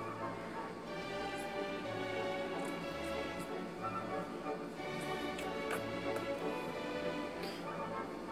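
Background music with steady held notes, and a few faint short snips of scissors cutting cloth.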